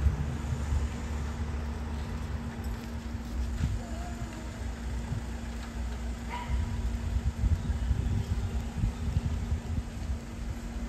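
Outdoor background noise: a low rumble with a constant low hum running under it, heavier in the first two seconds and again from about six and a half seconds on. Two faint short chirps come about four and about six seconds in.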